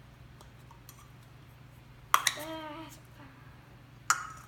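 Small plastic magic cups handled and set down on a stone tabletop: faint light taps, then one sharp knock about halfway through, followed by a short pitched sound that fades within a second.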